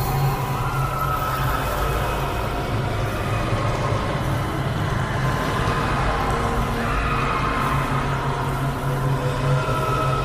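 Steady soundtrack bed laid over the footage: a low drone with long held tones above it, without a beat.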